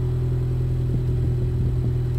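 Steady low hum of a 2020 Ford Mustang EcoBoost convertible's power soft top closing, its motor running over the idling 2.3-litre turbocharged four-cylinder engine.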